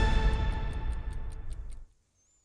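News programme title sting: held synth chords under a clock-like ticking, about five or six ticks a second, fading out just before the end.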